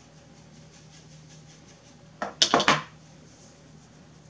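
Four sharp hard taps in quick succession about two seconds in, from a jar of loose finishing powder and a makeup brush being handled.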